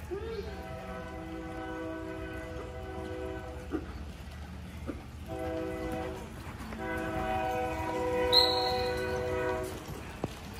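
A multi-chime train horn: a long blast, a short blast, then another long blast, the same steady chord each time. A brief sharp high sound cuts in during the last blast.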